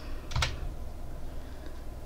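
A brief key click on a computer keyboard about half a second in, then faint room noise with a low steady hum.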